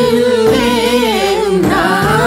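A Limbu song: a solo singing voice carries a wavering, ornamented melody over steady instrumental backing.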